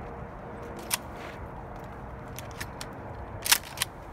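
Walking through dry sagebrush: a steady low rustle with scattered sharp snaps and ticks of dry twigs. The two loudest snaps come about a third of a second apart near the end.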